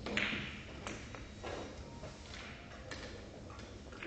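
Billiard balls knocking together on a carom billiards table: one sharp, loud click with a short ring just as the shot is played, then a few fainter knocks as the balls roll on.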